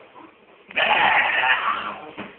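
A person's loud, hoarse, bleat-like cry lasting about a second, starting a little under a second in.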